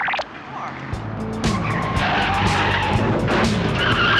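A car pulling away with its tires squealing, over action music with a steady beat that comes in about a second in.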